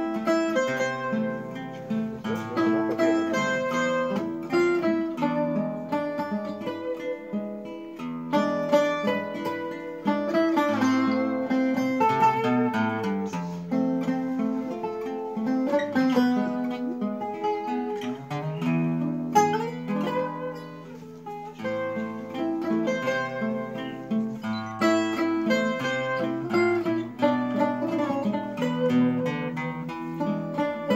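Portuguese guitar (guitarra portuguesa) picking the melody over a classical guitar (viola de fado) accompaniment with a plucked bass line, an instrumental fado guitarrada duet. The playing eases into a softer passage about two-thirds of the way through, then picks up again.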